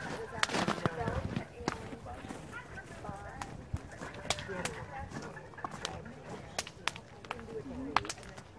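Wood bonfire crackling, with irregular sharp snaps and pops, under indistinct chatter of people nearby.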